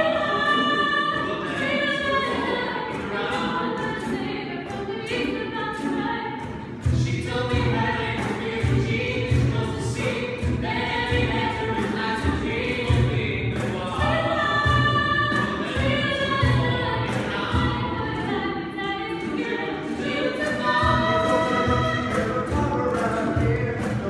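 Mixed a cappella vocal ensemble singing in close harmony, male and female voices together; about seven seconds in, a low, rhythmic beat comes in under the voices.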